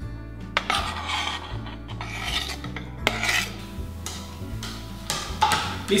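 A kitchen knife scraping and tapping on a plastic cutting board as chopped dried apricots are pushed off it into a ceramic bowl: several sharp clicks and short scrapes. Faint background music underneath.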